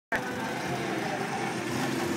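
Small go-kart engines running steadily as karts drive past on the track.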